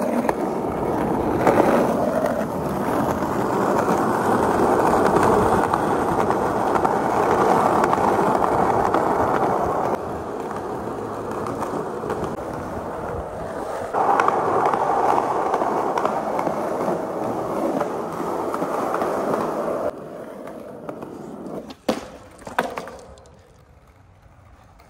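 Skateboard wheels rolling over rough concrete, a continuous rumbling roll. Near the end come two sharp knocks of the board striking the pavement.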